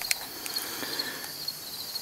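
Quiet outdoor background: a faint hiss with a thin, steady high-pitched whine that fades out near the end, and a few light clicks.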